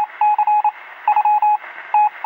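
Electronic beep tone keyed on and off in rapid pulses, in groups about half a second long with short gaps between them, over a thin hiss, like a signal heard over a radio.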